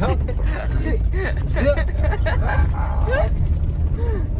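VW campervan driving on a rough gravel road, heard from inside the cab: a steady low rumble of tyres and engine, with short squeaks rising and falling in pitch repeated over it.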